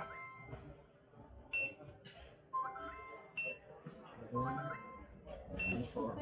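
Electronic ticket-scanner signals: a short high beep followed each time by a quick rising run of chime tones, repeating about three times as tickets are checked.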